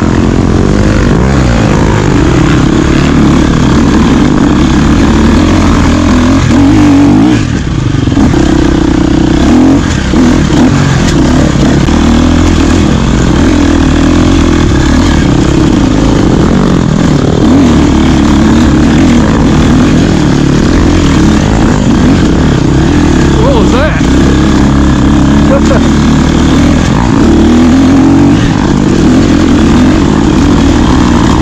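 Dirt bike engine revving up and down under throttle on a steep off-road climb, picked up loud and close by the rider's camera.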